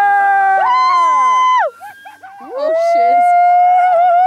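A group of people letting out long, loud howl-like yells, twice, each held for about two seconds with the pitch falling away at the end; in the first yell several voices overlap at different pitches.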